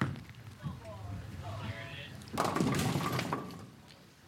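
Bowling ball rolling down the lane with a low rumble, then crashing into the pins about two and a half seconds in, a loud clatter that fades over about a second. The shot leaves the 2 pin standing.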